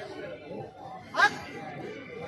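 Low crowd chatter during a lull in a man's speech over a microphone, with one short spoken word about a second in.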